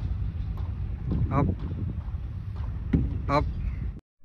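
Wind on the microphone as a steady low rumble, with a man calling out a drawn-out "up" twice, about a second in and near the end, to direct the levelling staff holder.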